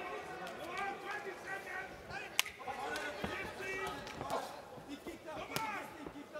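Faint voices calling out in a fight arena, with two sharp smacks, one about two and a half seconds in and another near the end.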